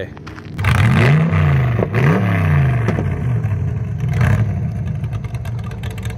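A hot rod's engine accelerating hard, its pitch climbing and falling back twice in the first couple of seconds before running on steadily, heard over wind noise.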